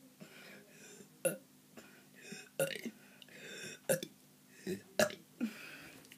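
A boy burping repeatedly, a string of short burps about a second apart.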